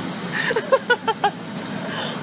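A person laughing in a quick run of short bursts about half a second in, over steady low road and engine noise inside a moving car.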